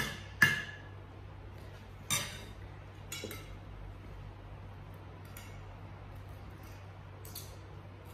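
Knife and fork clinking and scraping on a plate while cutting fish. A sharp, ringing clink about half a second in is the loudest, then a few lighter clicks and scrapes spaced out over the following seconds.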